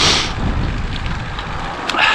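Wind rumbling on the microphone of a camera on a moving road bike, mixed with tyre noise on tarmac. A short hiss at the start and a sharp tick just before the end.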